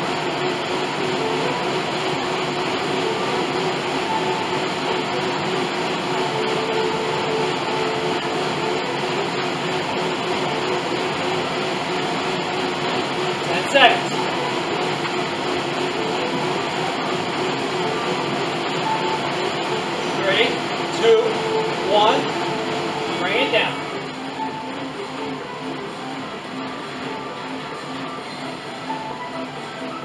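Bowflex Max Trainer M7 whirring steadily under a hard sprint, its air-resistance fan spinning at speed, then easing lower and quieter about 24 seconds in as the sprint ends. Brief vocal sounds break through once in the middle and a few times just before the slowdown.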